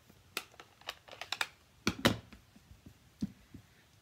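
Scattered light clicks and taps of a plastic stamp ink pad case as it is handled, opened and set down on a craft mat. The loudest knock comes about halfway through.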